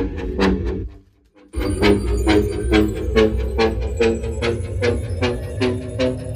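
Music with a heavy bass and a steady beat of about three strikes a second, played loudly through a JBL PartyBox Encore Essential portable party speaker at full volume with bass boost. The music cuts out for about half a second about a second in, then resumes.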